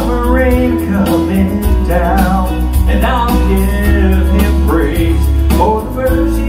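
A man singing a slow song into a microphone over country-style accompaniment with guitar and sustained bass notes.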